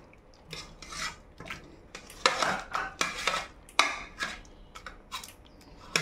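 Metal potato masher mashing cooked pumpkin and dal in a pressure cooker: a series of irregular mashing strokes, the masher scraping and knocking against the pot, with a cluster of louder strokes in the middle.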